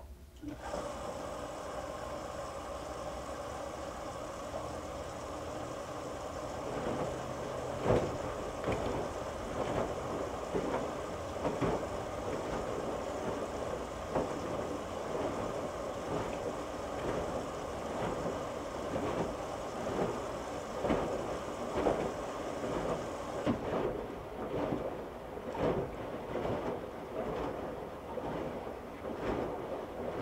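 Electrolux EFLS527UIW front-load washer's drum starting up about half a second in, with a steady whine, while a heavy wet moving blanket thuds irregularly in the turning drum. The high part of the whine stops a few seconds before the end, and the thudding goes on.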